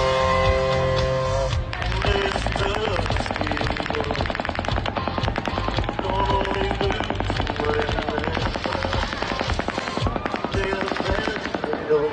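Electric-guitar concert music, cut off about two seconds in by long bursts of rapid automatic gunfire that run on with a short pause about ten seconds in, with voices calling out between and over the shots.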